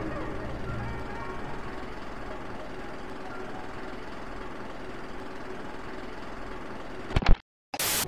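Steady rushing noise of sea water and surf, as picked up by a camera in the waves, with music fading out during the first second. A couple of sharp clicks near the end, followed by a brief dropout to dead silence.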